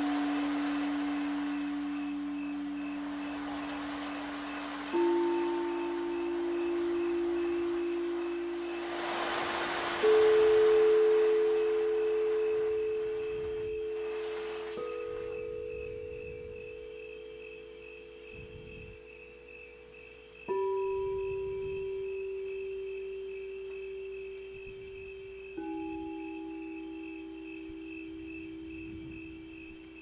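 Quartz crystal singing bowls struck one at a time, about every five seconds, each giving a clear, nearly pure tone at a different pitch that rings on and overlaps the next. A faint, steady, pulsing high chirp sounds throughout.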